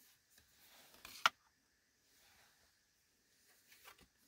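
Tarot cards being handled: a faint rustle of card stock and one short, sharp flick of a card about a second in, then only faint sound.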